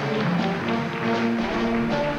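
High school jazz band playing live, with held notes from the ensemble over a steady drum-kit beat.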